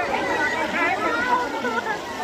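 Several people's voices talking over one another in a continuous chatter, in a language the recogniser did not catch.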